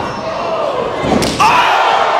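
A hard slam of a wrestler striking the ring a little over a second in, with voices shouting around it.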